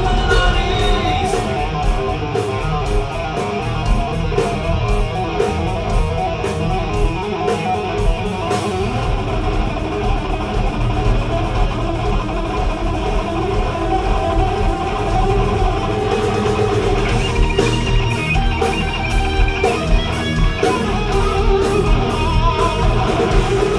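Hard rock band playing live through an instrumental passage with no singing: electric guitar leading over bass guitar and drums, with cymbal crashes through the first half and again near the end.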